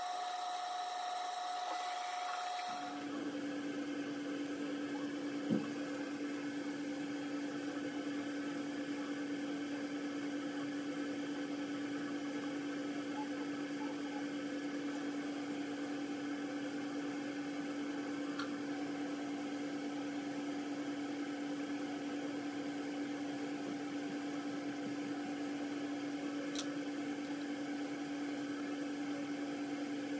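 A steady electric hum at one held pitch, like a small motor or fan running. It runs without change, after a few seconds of a higher-pitched hum at the start. A single sharp click about five seconds in.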